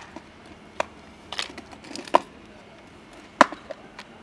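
A cat eating dry kibble from a plastic tub: a few sharp, separate crunches and clicks, the loudest about three and a half seconds in.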